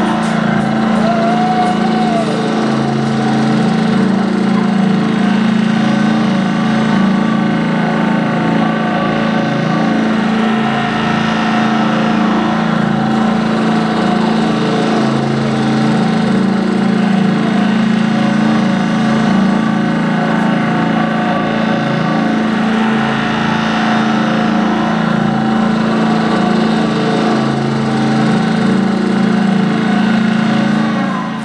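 Rock band holding a loud, sustained chord with a steady buzzing drone: the closing climax of a song, ending with the band.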